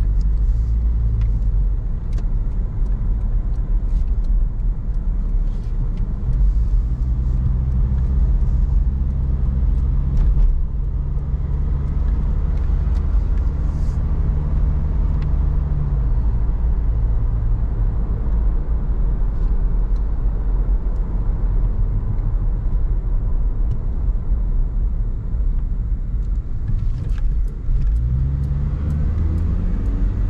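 Car engine and road rumble heard from inside the cabin while driving. The engine note rises about six seconds in, drops back around fifteen seconds, and rises again near the end.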